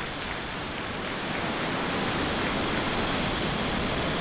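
Falcon 9 first stage's nine Merlin engines firing just after liftoff: a steady rushing noise that swells slightly over the first second and then holds.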